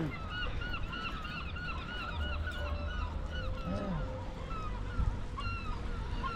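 Gulls calling: a fast run of short, arched cries that slows and thins out after about three seconds, over a low wind rumble on the microphone.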